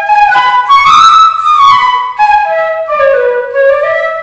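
Bamboo Carnatic flute playing a melodic phrase in raga Valachi, the notes climbing to a high note about a second in and then stepping back down.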